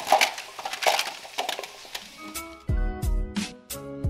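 Sliced vegetables dropped from metal tongs into a foil-lined baking pan: a quick run of clicks, taps and clinks. About two seconds in, a hip hop instrumental with a regular bass beat starts up.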